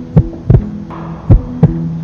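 Heartbeat sound effect: paired low thumps, about one pair a second, over a steady low drone, a suspense soundtrack cue.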